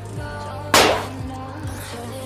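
A small match-strike 'water bomb' firecracker going off under water in a steel plate: one sharp bang about three-quarters of a second in, over steady background music.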